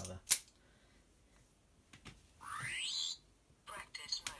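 A sharp click near the start. Then, about two and a half seconds in, a Wand Company Twelfth Doctor sonic screwdriver universal remote plays a short electronic sound effect that rises quickly in pitch as it switches on.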